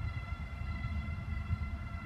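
Freight train cars rolling past with a steady low rumble, and a steady high-pitched whine held over it.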